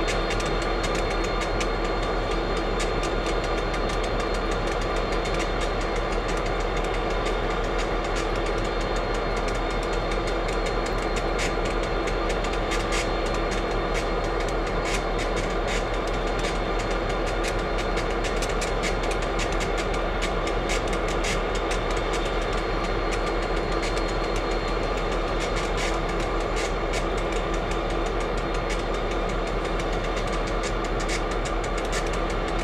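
EMD SD40 locomotive's 16-cylinder two-stroke diesel idling steadily while stopped, with scattered faint clicks over it.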